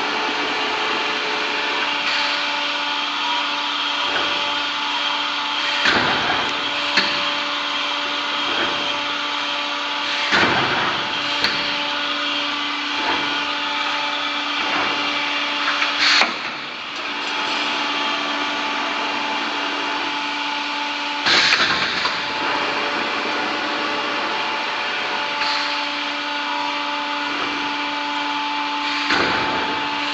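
Montorfano GE14 CNC wire bending machine running through its bending cycle: a steady mechanical hum with several steady tones that cut in and out, broken every few seconds by short, sharp bursts of noise.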